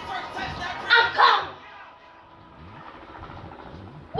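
A young girl's voice rapping, with a loud burst about a second in; after about a second and a half the voice stops and the sound falls much quieter.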